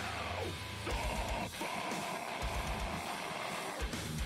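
Metalcore recording with heavily distorted electric guitars over drums. There are quick runs of kick-drum hits about a second in and again twice in the second half.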